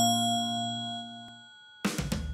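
A bright chime struck once, a logo sound effect, rings out and fades away over about a second and a half. Near the end, background music with a steady beat starts abruptly.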